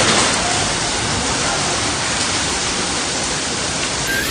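Violent storm: heavy rain driven by strong wind, a loud, steady, dense rush of noise.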